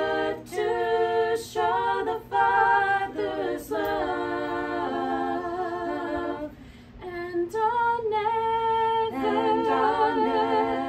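Female vocal trio singing a Christian worship song a cappella in harmony, in sustained phrases broken by short breaths, with a brief pause about seven seconds in before the singing resumes.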